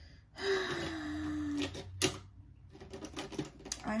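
A breathy vocal sigh with a falling pitch, about a second long, then a sharp click and a quick run of small plastic clicks and taps as makeup items are picked up and handled.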